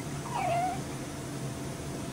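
Newborn baby giving one short whimpering cry, about half a second long, that drops in pitch and then levels off, over a steady low room hum.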